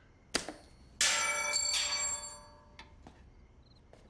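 A bell rings: a sudden loud ring about a second in, struck again just after, ringing out over about a second and a half. A short click comes just before it, and a couple of faint short high beeps come near the end.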